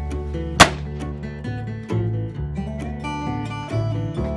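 Strummed acoustic guitar background music, with one loud gunshot about half a second in.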